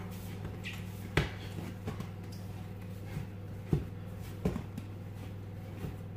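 Risen bread dough being knocked back and kneaded by hand on a kitchen worktop: a handful of soft, irregular thumps as the dough is pushed and rolled, the loudest about a second in, over a steady low hum.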